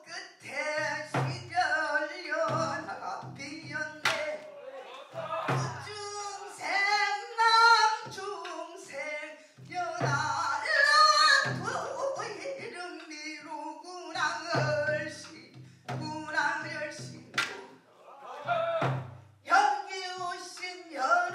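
A female pansori singer sings a passage with long, wavering held notes. The buk barrel drum keeps the rhythm beneath her, with clusters of low strokes on the drumhead and a few sharp knocks of the stick on the drum's wooden shell.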